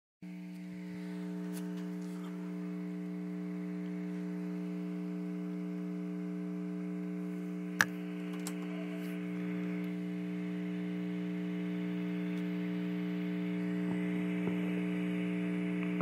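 Steady electrical mains hum: a constant buzz of several steady tones that do not change in pitch, with a single sharp click about eight seconds in.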